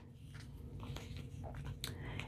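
Faint crinkling and scratching as fingernails pick stuck fusible-web paper and adhesive off the edge of a piece of freshly ironed cotton fabric, with a couple of tiny clicks.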